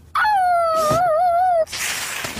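A cartoon dog's howl: one long call that starts high, drops quickly and then wavers, ending about a second and a half in. A short burst of noise follows near the end.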